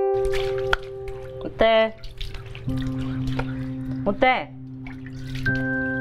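Background music of held electric-keyboard chords, over irregular gritty scraping and clicking from a stone grinder as the stone roller is worked in its mortar. A woman's voice calls out twice briefly, the second time a name.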